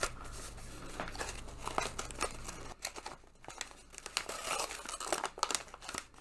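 Paper packaging being unwrapped by hand: irregular crinkling, rustling and tearing with scattered sharp crackles.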